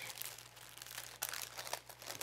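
Thin plastic packaging around a new tie crinkling faintly as it is handled, a scatter of small crackles.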